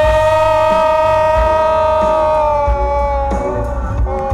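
A man singing along with a song, holding one long loud note for about three seconds before it falls away. A low rumble sits beneath it in the car's cabin.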